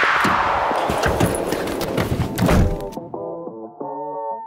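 Background music with a downward-sweeping whoosh effect, over knocks and thumps from a car door being opened by its handle and the driver getting in. The car sounds cut off abruptly about three seconds in, leaving the music alone.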